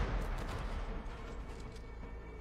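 The reverberating tail of a loud bang in the TV episode's soundtrack, fading into a low rumble, with a faint steady high tone coming in near the end.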